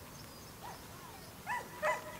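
Short animal calls, two of them loud and close together near the end, with fainter ones before them.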